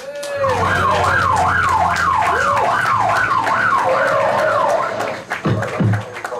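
Siren wail sweeping up and down about twice a second, loud over a steady low hum, stopping about five seconds in.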